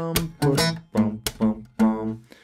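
Steel-string acoustic guitar in drop D tuning, fingerpicked: a syncopated bass-note groove with chord notes, about four or five plucked notes roughly half a second apart.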